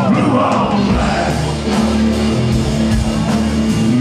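Live blues-rock band playing: electric guitar over bass and drums, with a singer's voice.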